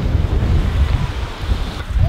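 Wind buffeting a handheld camera's microphone on an open beach: an uneven, gusty low rumble that eases briefly near the end.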